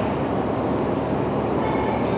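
Steady background noise: an even rumble and hiss with no distinct knocks or clanks.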